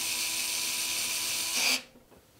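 A small electric screwdriver running steadily, driving in the screw that holds a small bracket on a PC case's GPU support bracket, then stopping abruptly near the end.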